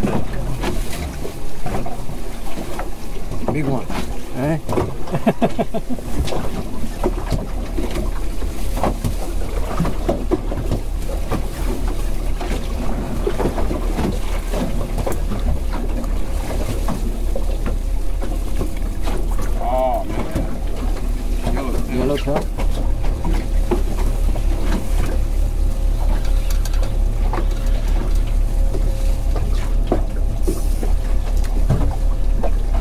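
Steady low wind rumble on the microphone aboard a small open boat, getting stronger about seven seconds in, with voices now and then.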